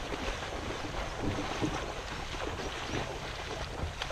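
Water rushing and lapping along the side of a moving canoe, a steady wash with small irregular splashes, with wind buffeting the microphone.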